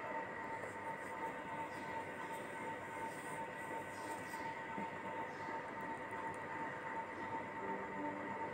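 Steady, faint background noise with a thin unchanging hum and no distinct events.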